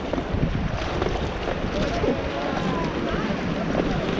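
Wind buffeting the microphone over the steady rush of river water around an inflatable raft, with faint voices in the background.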